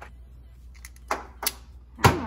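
Hand-held self-adjusting wire stripper clicking and snapping as it grips and strips a wire's insulation: a few sharp clicks, the loudest about a second and a half in, over a faint low hum.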